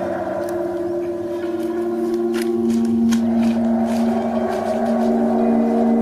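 Background music of sustained, ringing gong- or singing-bowl-like drone tones, with the held notes shifting about halfway through.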